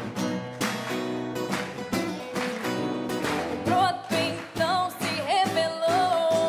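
Two acoustic guitars strumming an upbeat rock-and-roll tune in a live performance, with a woman's voice coming in singing a wavering melody over them a little past halfway through.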